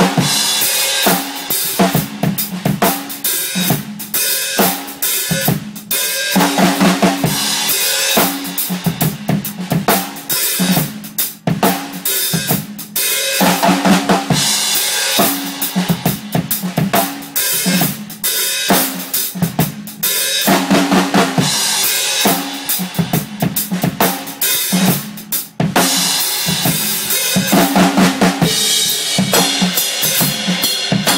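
A drum kit played continuously: kick drum, snare and toms under cymbals, with a couple of brief dips in the beat.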